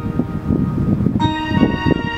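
Instrumental intro of a ballad backing track: sustained bell-like keyboard tones, with a new chord coming in a little after a second in, over repeated low drum-like hits.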